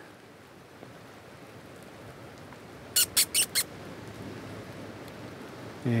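A small bird gives four quick, sharp chirps about three seconds in, over a faint steady hiss of the bush.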